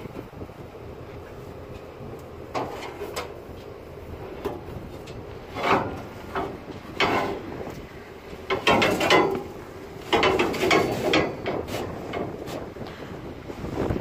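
Scattered scrapes and knocks from a steel hopper-bottom grain bin as it is cleaned out of barley seed, a few louder clusters about three, six, nine and ten seconds in, over wind buffeting the microphone.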